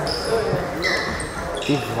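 Sneakers squeaking briefly on a sports hall floor, a few short high squeaks, with a volleyball bouncing on the floor.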